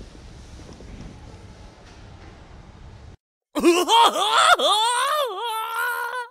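Steady low room hum for about three seconds, then a cut to silence. About half a second later comes a loud, voice-like comic sound effect whose pitch swoops up and down and ends in a wavering held note.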